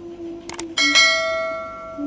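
Subscribe-button animation sound effect: a quick double mouse click, then a bell ding that rings out and fades over about a second.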